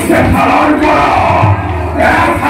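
Loud, wavering shouted calls from male voices, in the battle-cry style of the demon characters of an Assamese Bhaona play.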